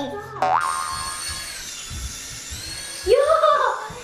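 A springy rising 'boing' sound effect about half a second in, followed by the steady high-pitched whine of a small toy flying light's propeller motor, its pitch dipping briefly and rising again. Voices come in near the end.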